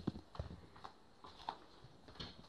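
Footsteps on a hard indoor floor: a quick, uneven run of thuds and taps, the loudest right at the start.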